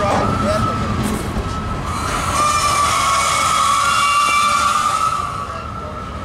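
Loaded freight cars rolling past at track level, a steady rumble of wheels on rail, with a steady high-pitched squeal from the cars' wheels that swells in the middle and fades near the end.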